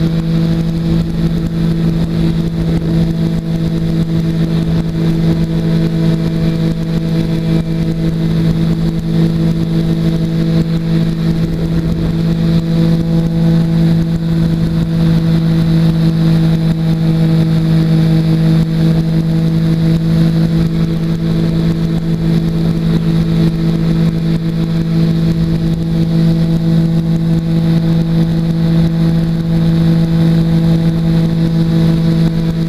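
Weight-shift trike's engine and pusher propeller running at steady high power during the climb-out just after lifting off, a loud even drone with rushing air over it.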